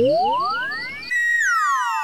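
Synthesised sound-effect sting: a pure tone glides smoothly upward, then from about a second in a cascade of many falling tones slides down.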